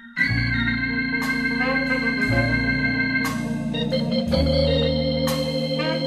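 Instrumental easy-listening music led by Hammond organ, starting up from silence: a few soft notes, then the full arrangement comes in just after the start with held organ chords over a moving bass line, and a sharp accent about every two seconds.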